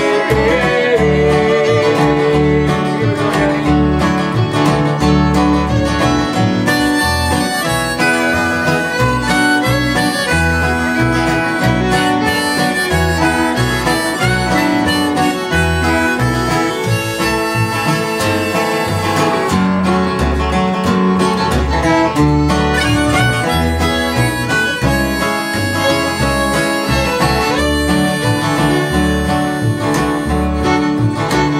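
Instrumental break in a live acoustic bluegrass-style song: a harmonica takes the lead over a strummed acoustic guitar and a pulsing bass line.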